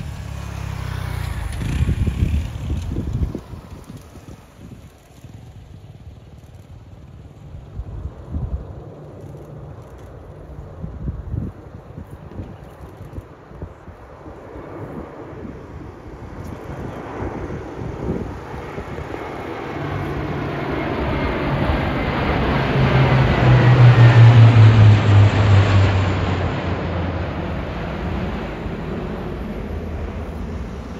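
Three RAF C-130J Hercules four-engine turboprops flying over in formation: their propeller drone swells to a peak a little past the middle, the pitch dropping as they pass overhead, then eases off. Wind buffets the microphone in the first few seconds.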